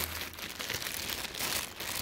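Clear plastic bag crinkling and rustling as the bottles wrapped in it are handled, a continuous run of small crackles.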